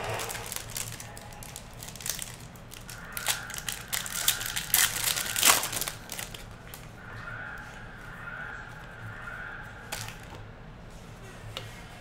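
Foil wrapper of a trading-card pack crinkling and tearing as it is pulled open by hand, in an irregular run of crackles that is busiest in the middle.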